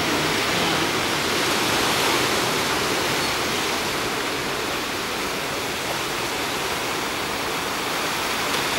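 Surf washing onto a sandy beach: a steady rush of breaking waves that swells slightly about two seconds in and eases off a little after.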